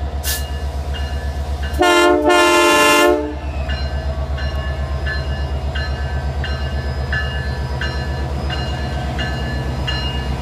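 Diesel locomotive passing close by, its engine running with a steady low throb. About two seconds in, its air horn sounds a short blast and then a longer one, about a second and a half in all. Short ringing tones repeat about twice a second, typical of the locomotive's bell.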